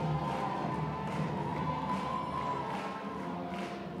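New Orleans-style brass band playing: horns hold a sustained chord over a steady drum beat with cymbal or snare hits about once every 0.8 seconds.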